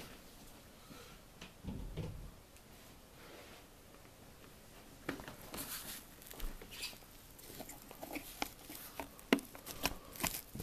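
Handling noise from plugging a power adapter's cord into a breast pump: faint at first, then rustling and scattered light clicks from about halfway through, with one sharp click near the end.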